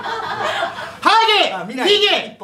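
Live audience laughter, then from about a second in a man's loud, high-pitched laughing voice, rising and falling.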